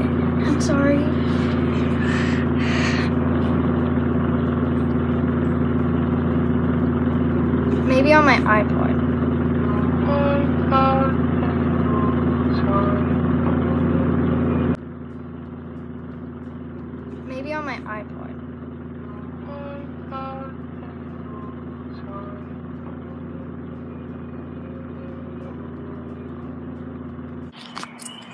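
A steady low hum made of several held tones, dropping sharply in level about halfway through, with a few faint, brief snatches of a voice.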